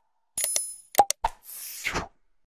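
Animated subscribe-button sound effects: a bright bell ding that rings and fades, then a few sharp mouse-click sounds about a second in, then a soft whoosh near the end.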